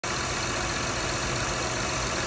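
Honda Accord engine idling steadily, heard close up in the open engine bay.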